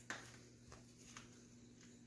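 Near silence: room tone with a faint steady hum and a few faint soft knocks, as a puppy shifts about in a wire crate on blankets.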